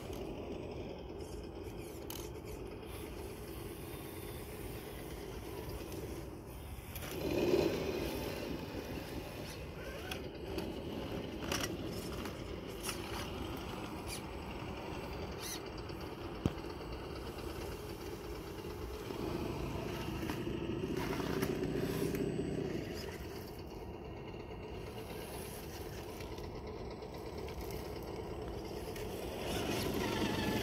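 RC rock crawlers, a Traxxas TRX-4 and a YK4106, climbing rock: their electric motors and geartrains whine under load, swelling about seven seconds in and again around twenty seconds in. Tyres scrape on stone, with a few sharp clicks.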